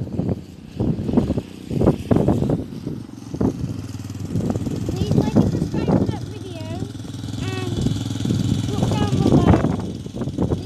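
Small children's dirt bike engine running. It is uneven in the first few seconds, then settles to a steady idle about four seconds in as the bike stops, with voices over it.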